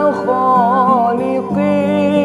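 A voice singing a sholawat melody in long, wavering notes over a steady held accompaniment.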